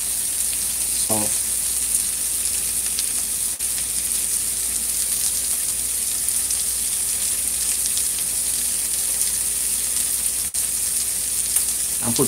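A frying pan of diced tomatoes, onion and corned pork sizzling steadily on the stove.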